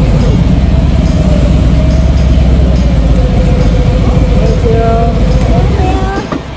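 Harley-Davidson V-twin motorcycle engine running at low speed as the bike rolls in and comes to a stop, a loud steady rumble heard from the bike's own camera.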